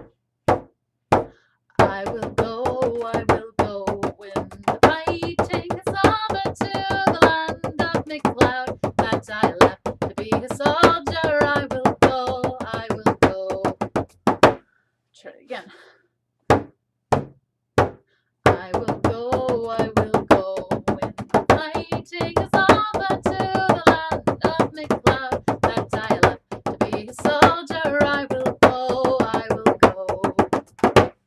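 Bodhrán with a synthetic head, beaten with a wooden tipper: a few single strokes, then a steady beat with a woman singing over it. Near the middle the singing stops for a few seconds and only a few lone strokes sound, then singing and drumming resume.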